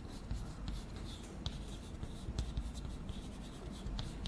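Chalk writing on a chalkboard: short scratching strokes and small sharp taps as the chalk forms characters, in an irregular run.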